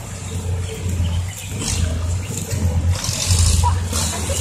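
Low, steady engine rumble of a loaded six-wheel dump truck driving slowly along a dirt road, with a faint hiss over it; the rumble swells near the end.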